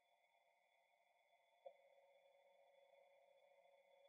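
Near silence: a faint steady hum of tones, with one tiny click about one and a half seconds in.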